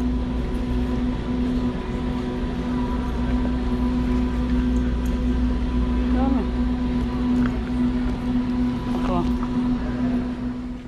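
Steady low hum and an even background noise of a shop's interior, with brief faint voices about six and nine seconds in.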